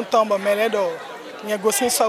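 A woman speaking in Fon into microphones, with a short pause about a second in.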